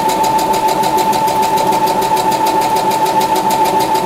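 Brother XR1300 computerized sewing machine running steadily while stitching a seam. Its motor whines at one steady pitch under a rapid, even rhythm of needle strokes.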